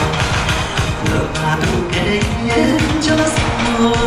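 Guozhuang dance song: a singing voice over a steady beat.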